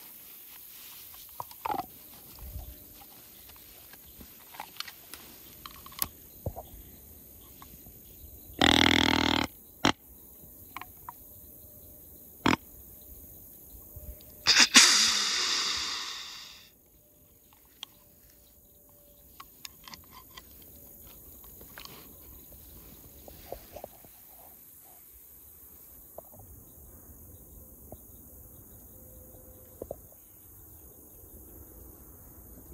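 White-tailed deer grunt sounds during the rut. A low, pitched grunt lasts about a second, and a louder, hissing burst about six seconds later fades out over roughly two seconds.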